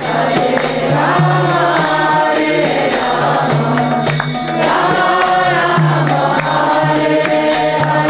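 Group devotional chanting (kirtan): voices singing a melodic chant over a steady low drone, with regular jingling percussion strokes throughout.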